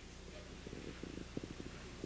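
Faint, irregular taps and scrapes of chalk writing on a blackboard, over a steady low hum.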